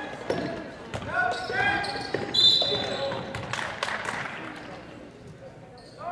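Basketball bouncing on a hardwood gym floor amid shouting voices, echoing in the gym. A short, high, steady tone sounds about two and a half seconds in, and the noise dies down near the end.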